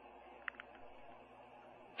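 Near silence on a telephone line: faint hiss, with two faint ticks about half a second in.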